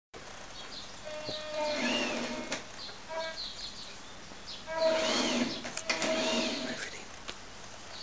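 Electric drive motor of a remote-controlled rotating dome whirring in several short bursts, its pitch rising and falling as the dome starts and stops turning, with a few sharp clicks in between.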